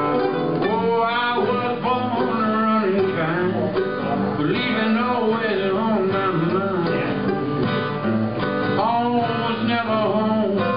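Acoustic guitar and mandolin playing together live, an instrumental passage of a country song, with notes that slide and bend.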